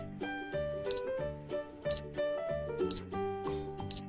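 Countdown timer sound effect ticking once a second, five sharp high clicks, over soft background children's music.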